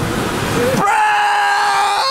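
A young man's long drawn-out yell of "bro!", held on one steady pitch for over a second, after a brief jumble of laughing and shouting.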